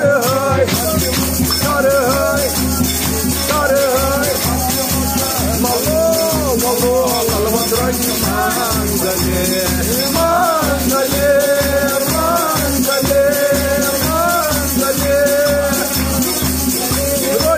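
A devotional song: a singing voice carries a melody over a steady low beat and a continuous shaker rattle.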